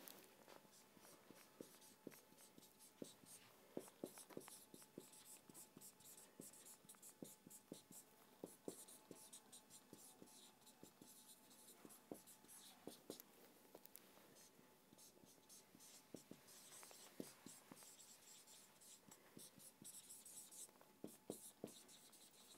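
Faint scratching and tapping of a marker pen writing on a whiteboard, in many short, irregular strokes.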